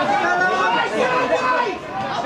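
Several people talking at once close to the microphone, overlapping chatter with no clear words.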